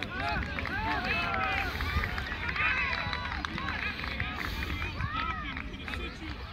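Indistinct voices of several people calling and shouting across an open soccer field, overlapping and too distant to make out words, over a steady low rumble.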